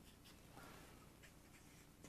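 Faint strokes of a felt-tip marker drawing on flipchart paper: several short strokes and one longer one about half a second in.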